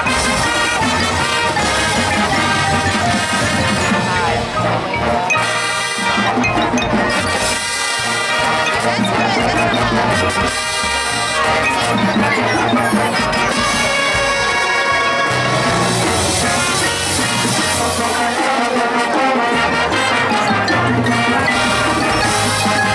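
High school marching band playing an 80s-themed halftime arrangement: brass section of trombones, trumpets and sousaphone over marching bass drums, loud and continuous.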